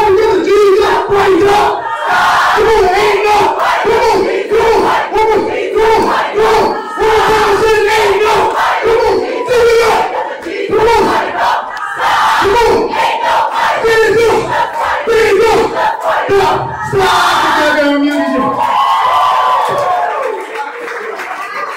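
A crowd shouting and chanting together, loud and continuous in short repeated shouts, led by a man shouting into a microphone. Near the end a voice slides down in pitch.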